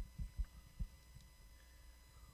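A faint run of soft, low thumps, about four in the first second, then quiet.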